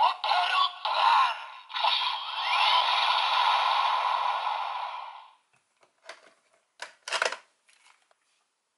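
DX Tiguardora toy's built-in speaker playing its electronic sound effects and voice lines, thin and without bass, ending in a long held effect that fades out about five seconds in. After that, a few short plastic clicks and knocks of the toy being handled.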